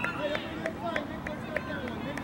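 Several children's voices shouting and chattering over one another, with a series of sharp clicks about three a second.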